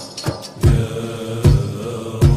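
A men's chorus sings an Islamic nasheed in sustained unison lines over drum percussion. Two deep drum strokes, a little under a second apart, are the loudest sounds, with lighter taps between them.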